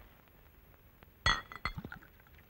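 Glass clinking: a glass bottle knocks against a small drinking glass with one sharp, ringing clink a little over a second in, followed by several lighter clinks.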